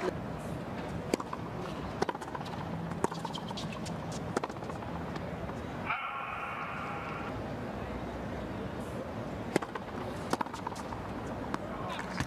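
Tennis ball strikes during a rally, sharp single pops about a second apart, over the steady murmur of a stadium crowd. A brief pitched call sounds about halfway through, and a few more ball pops come near the end.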